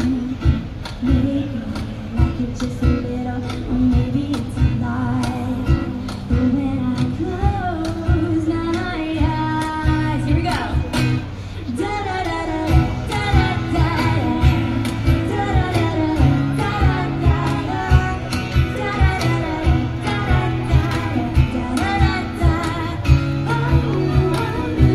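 Live acoustic pop band: a woman singing over strummed acoustic guitars and a steady hand-struck cajón beat.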